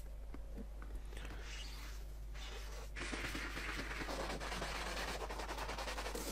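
Faint fizzing crackle of cleaning-foam bubbles popping on a car's gear-shift knob. About halfway a louder, steady hiss of water and foam washing over the car comes in.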